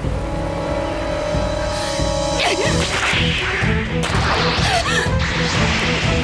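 Dramatic soundtrack music with a held drone, joined about halfway through by several whooshing swishes and sharp strikes, like blade or whip sound effects.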